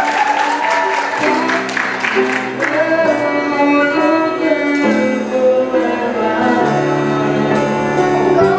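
A group of children singing a song together, over sustained electronic keyboard chords that change every second or two.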